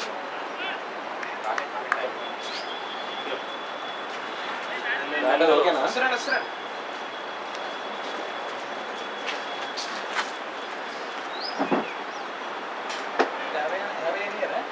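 Open-air ground ambience: a steady background hiss with distant voices calling across the field, loudest in a short burst about five seconds in, and a few scattered short clicks.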